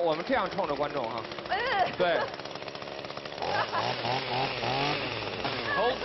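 Chainsaw running steadily, with voices talking over it.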